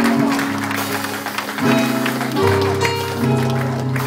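Live gospel worship music: a Yamaha Motif keyboard holding sustained chords that change every second or so, with the congregation clapping along.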